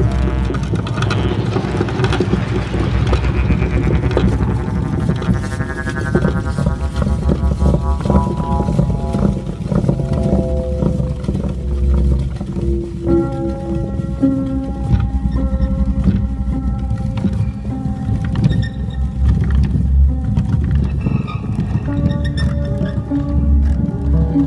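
Hypnotic electronic techno track with a deep bass running underneath. In the first half, layered synth tones sweep downward. From about halfway through, held synth notes sound over clicking percussion.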